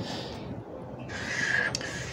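Felt-tip marker drawn along a clear plastic curve ruler on pattern paper: a faint scratchy stroke at the start, then about a second in a longer stroke with a steady squeak lasting under a second.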